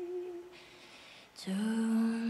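A girl's voice singing softly and slowly: a held note fades out half a second in, and after a short lull a new, lower note begins and is held.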